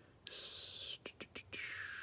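Glossy Mosaic basketball cards sliding against each other in gloved hands: two drawn-out rustling slides, each with a falling hiss, with a few quick clicks between them.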